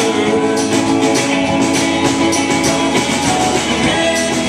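Live rock band playing an instrumental passage: hollow-body electric guitar, bass and a drum kit with cymbals keeping a steady beat, without vocals.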